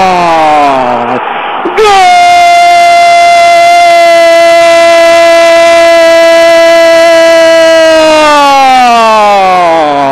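Radio commentator's drawn-out goal cry, a long "gooool" held on one high pitch for about six seconds. The pitch sinks each time his breath runs out, with a quick breath about a second in and the voice sliding down again near the end.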